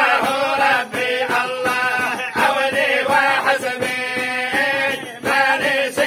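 A group of men chanting together in unison, an Arabic devotional chant with long held, melodic notes.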